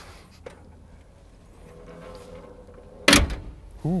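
A car door shutting with one heavy thunk about three seconds in, after a few seconds of faint background hum.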